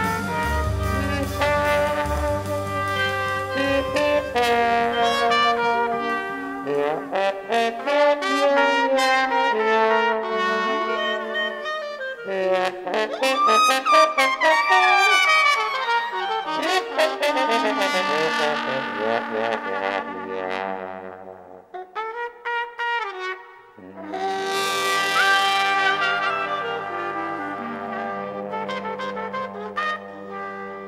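Instrumental jazz horn section, with trombone prominent, playing the closing bars of a song without vocals. Held chords and gliding, bending lines fill the middle. The sound thins out briefly past the middle, then swells into a bright final chord that is held and slowly fades.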